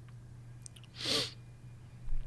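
One short, breathy burst of breath from a man close to the microphone, about a second in, with a few faint mouth clicks before it and a steady low hum underneath.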